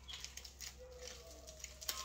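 Faint crinkling of aluminium foil as hands press it down over wrapped hair, with a sharper crackle near the end. Two faint, brief pitched sounds come in the middle.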